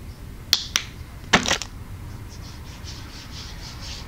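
Two sharp clicks about half a second in, then a short louder burst as a cosmetic lotion bottle is handled. After that comes faint rubbing of body illuminator lotion into the skin of an arm.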